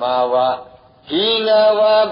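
A man chanting Pali scripture in a slow, drawn-out recitation tone, with a short pause between two held phrases just after half a second in.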